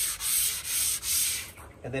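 Sanding block with 180-grit sandpaper rubbed in long strokes along the rail of a laminated wooden bellyboard blank: a hiss that swells and fades with each stroke, about three strokes, stopping about one and a half seconds in.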